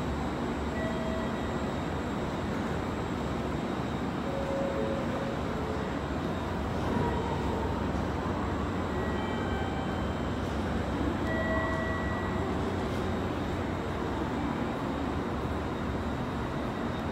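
Steady low hum and rumble of a JR Kyushu 885 series electric express train at a station platform, with a few brief faint tones now and then.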